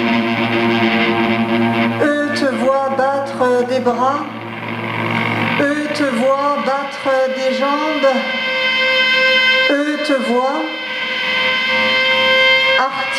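Prepared electric guitar played through effects: a held chord, then wavering notes that bend and slide up and down in pitch.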